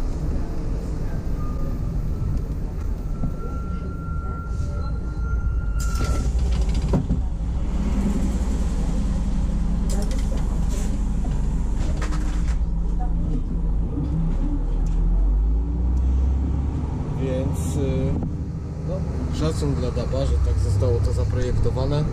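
Articulated DAB bus driving at road speed, heard from the driver's cab: steady low engine and drivetrain running with road noise and a few short knocks. A thin steady whistle sounds for the first few seconds.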